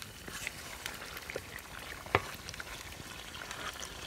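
Chicken curry sizzling in a metal pot while a metal spoon stirs it, with scattered scrapes and clicks and one sharp clank of the spoon against the pot about two seconds in.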